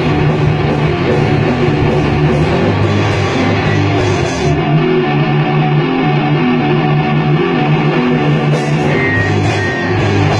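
Heavy metal band playing live in a rehearsal room: heavily distorted electric guitars chugging a riff over bass and drums. The highest frequencies drop away for a few seconds in the middle and come back near the end.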